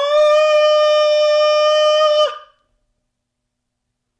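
A male singer holding the last sung note of the song, leaping up an octave to a high note right at the start and holding it steadily for about two seconds before it cuts off.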